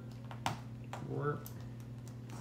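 Small plastic LEGO bricks clicking as pieces are picked from a loose pile and pressed together, a few sharp separate clicks over the two seconds. A brief vocal sound comes about a second in.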